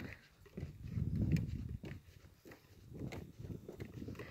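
Footsteps on the wooden planks of a lakeside boardwalk, dull low thuds in two spells.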